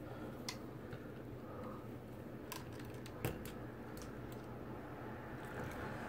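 Faint clicks and handling noise from electrical cable and a pair of lineman's pliers being worked at a plastic electrical box, with one sharper click about three seconds in.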